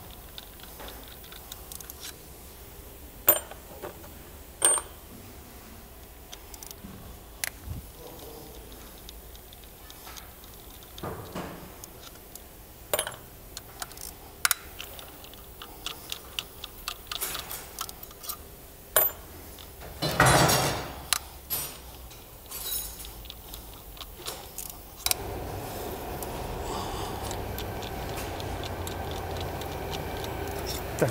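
Socket ratchet and steel tools working intake manifold bolts loose: scattered sharp metallic clicks and clinks, with a longer run of clicking about twenty seconds in. A steady background hum comes up near the end.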